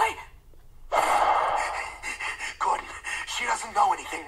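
A cartoon character's long, breathy gasp about a second in, followed by short, squeaky vocal noises.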